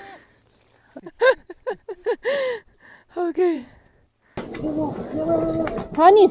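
A woman's voice in short bursts of exclamation. Then, from about four seconds in, it cuts abruptly to the steady running and wind noise of an off-road motorcycle riding on a dirt track, with a voice over it.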